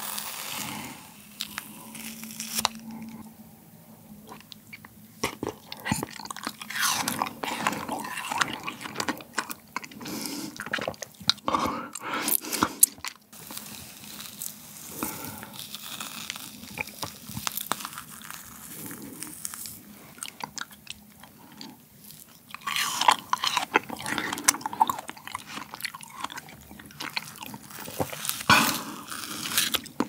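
Close-miked metal spoon scraping and scooping thick gelato in a plastic tub, with wet mouth sounds of eating it. The sound comes as many small irregular scrapes and clicks, busier and louder near the end.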